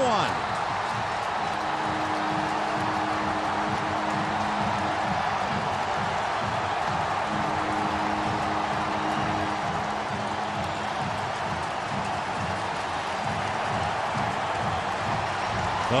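Large ballpark crowd cheering steadily after a home run. A low, steady two-note tone, like a horn, sounds twice for a few seconds through the cheering.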